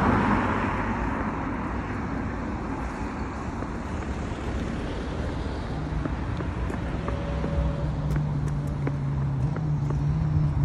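Roadside traffic: a car's rushing noise at the start that fades over the next few seconds, then a low, steady engine hum from another vehicle that comes in about six seconds in and grows slightly louder.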